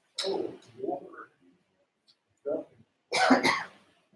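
A person coughing and clearing their throat in several short bursts, the loudest a quick double cough near the end.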